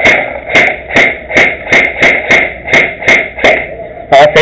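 Airsoft rifle firing repeated single shots out of a window, a sharp pop about every 0.4 seconds.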